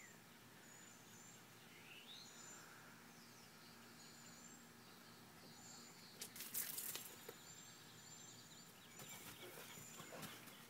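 Near silence outdoors with faint, scattered bird chirps. A short burst of rustling noise comes a little past halfway.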